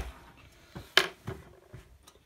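A single sharp plastic click about halfway through, with a few lighter taps around it: a Lego minifigure being handled and set down on a hard surface.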